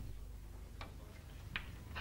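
Faint room hush with two soft clicks, about three-quarters of a second apart.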